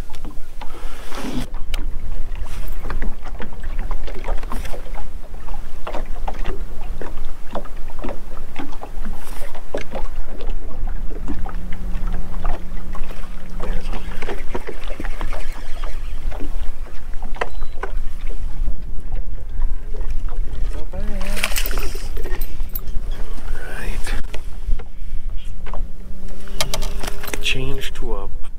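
Steady low rumble of wind on the microphone and water against a fishing boat's hull, with scattered knocks and clicks from handling the rod and a caught fish, sharper clusters of clicks near the end.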